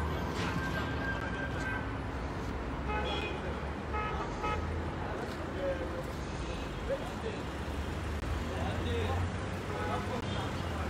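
Street background: a steady low traffic rumble with faint voices of passers-by.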